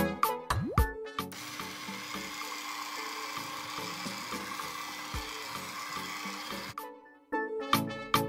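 Electric hand mixer running steadily, churning butter into flour for a crumbly dough. It starts just over a second in and stops about a second before the end. Upbeat plucked background music plays before and after it.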